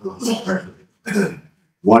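A man's voice making short non-word sounds, with a brief throat clearing a little over a second in.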